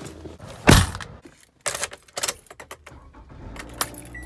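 A car door slams shut about a second in, the loudest sound. It is followed by sharp clicks and the jangle of a car key bunch being handled at the ignition.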